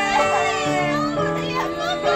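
Women wailing and sobbing aloud in grief, their high, wavering cries over music of slow, sustained chords.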